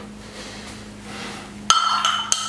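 A hard object strikes a dish at the painting table near the end: a single sharp clink that rings briefly. Before it there is only a low steady hum.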